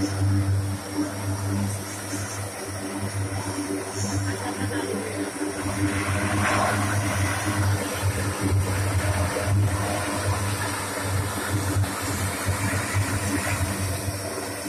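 Four turboprop engines of a Lockheed Martin C-130J Hercules running with their six-bladed propellers turning as the aircraft taxis: a steady, loud low drone with a constant deep hum.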